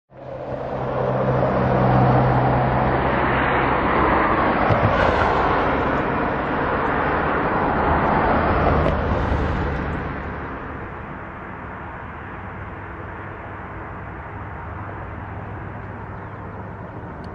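Road traffic passing close by, with tyre and engine noise that swells as vehicles go past through the first ten seconds, then eases to a quieter steady hum.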